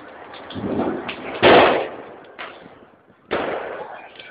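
Firecrackers going off: several small pops, then two louder bangs, the loudest about a second and a half in and another near the end, each dying away briefly.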